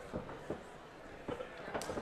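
Low background noise of the fight hall, with a few brief faint knocks.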